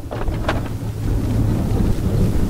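Power sliding door of a 2008 Honda Odyssey opening under its motor: a steady low hum and rolling rumble. A click comes as it starts and another about half a second in.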